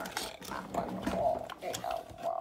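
A wordless, voice-like sound, with faint clicks from a clear plastic diecast display case being handled and opened.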